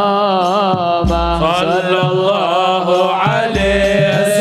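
Devotional Arabic qasidah sung in a long, winding vocal line, over hadrah frame drums. Deep drum strokes come about a second in and again near the end.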